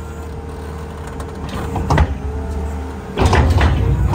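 Kramer loader's diesel engine running steadily, with a sharp clunk about two seconds in. A little after three seconds the engine takes load and gets louder as the bucket pushes into the muck heap.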